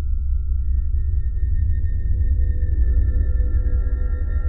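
Eerie ambient background music: a deep, steady low drone under sustained high tones, with a further higher tone coming in about half a second in and more layering on after.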